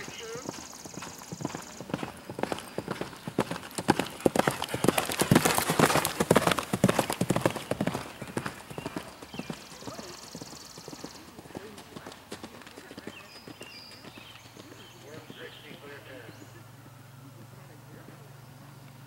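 A horse galloping on grass close by: rapid hoofbeats build to their loudest about five to seven seconds in, then fade as it gallops away.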